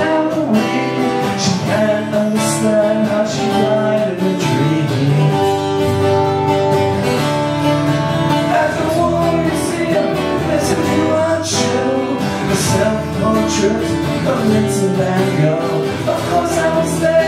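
Live acoustic rock song: two acoustic guitars strummed, one a twelve-string, with a man singing lead over them.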